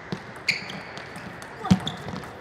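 Table tennis ball clicking sharply off bats and table in a rally: a few separate knocks, the loudest near the end.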